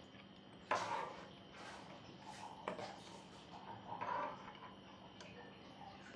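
Metal spoon stirring thick gravy in a steel pot: a few faint scrapes and clicks of the spoon against the pot, with soft wet mixing sounds between them.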